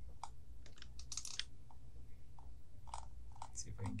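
Scattered light clicks of a computer mouse scroll wheel being turned with the Control key held, stepping the microscope's focus, with a quick run of clicks about a second in, over a low steady hum.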